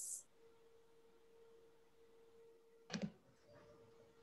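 Near silence: faint room tone with a thin steady hum, broken by one short click-like sound about three seconds in.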